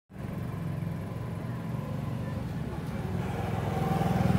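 An engine idling steadily nearby, a low pulsing hum that grows slightly louder toward the end.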